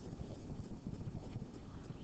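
Faint low rumbling background noise with small irregular soft thumps, as of a microphone picking up room rumble or light handling.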